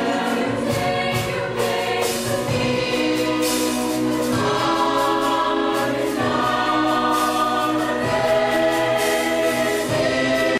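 High school choir singing held chords, backed by a live band of electric bass guitar and drum kit, with the chords changing every second or two.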